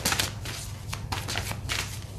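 A deck of tarot cards being shuffled by hand: a quick, irregular run of crisp card flicks and rustles, densest at the start.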